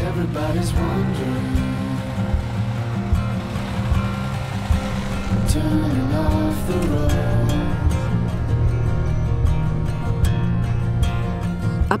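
Background music with sustained, held tones.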